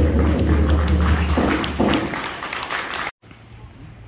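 Audience applauding, with a few voices, slowly fading, then cut off abruptly about three seconds in, leaving quiet outdoor air.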